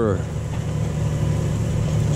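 Tractor diesel engine running steadily under load while pulling a reversible plough through the soil, heard inside the cab as a low, even drone.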